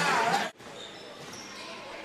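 Basketball game court sound: voices and court noise that break off abruptly about half a second in. Quieter gym ambience follows, with a few faint high squeaks.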